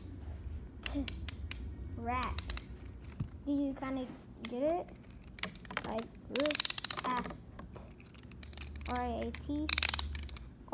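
A child's short wordless vocal sounds, rising in pitch, mixed with sharp clicks of small plastic Beyblade parts being handled. About six and a half seconds in there is a quick burst of rapid ticking.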